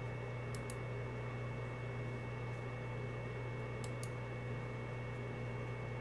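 Two faint double clicks of a computer mouse, about half a second in and about four seconds in, over a steady low electrical hum with a thin high whine.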